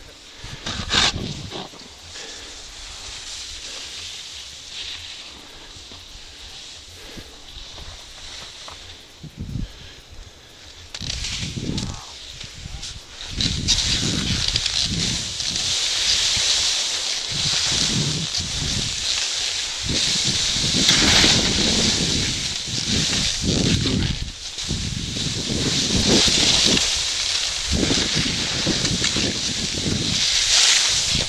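Skis scraping and chattering over hard, icy snow, with wind buffeting the microphone. It is fairly quiet at first and becomes a loud, steady hiss about a dozen seconds in, as the skier gets moving downhill.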